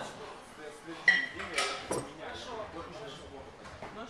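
A pair of competition kettlebells clanking as they are cleaned into the rack position during a long-cycle set. One sharp metallic clank with a short ring comes about a second in, followed by two lighter clinks.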